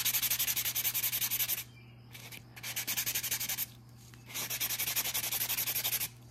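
Coarse side of a nail buffing block rubbed quickly back and forth over a hardened acrylic nail, a fast scratchy rasping in three bouts with short pauses between, smoothing the filed surface.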